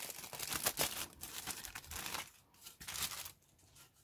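Thin clear plastic bag crinkling as it is pulled off a plastic model kit part. The crinkling is densest in the first two seconds, then thins to a few scattered rustles.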